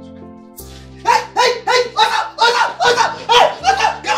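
A person's voice making loud, rapid, repeated cries, about three a second, starting about a second in, over soft background music.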